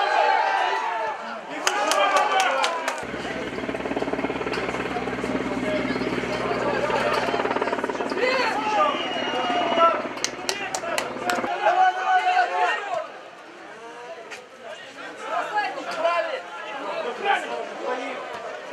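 Shouting voices on a football pitch, players and a small crowd calling out during play, with a few sharp knocks. A steady low buzzing drone starts about three seconds in and cuts off abruptly about two-thirds of the way through.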